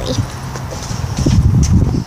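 Footsteps and handling bumps on a handheld camera's microphone as the person filming walks, heard as irregular low knocks and rumble, strongest in the second half.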